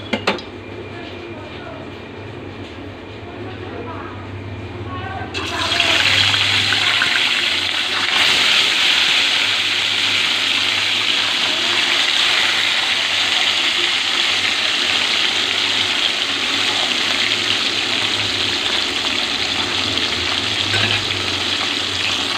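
Marinated tilapia steaks frying in hot oil in a metal wok: a loud, steady sizzle starts suddenly about five seconds in as the fish goes into the oil. It grows a little louder a few seconds later and keeps going evenly.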